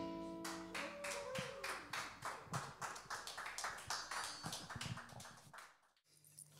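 The last chord of a live band ringing out and stopping about half a second in, followed by sparse, faint clapping from a few people that dies away.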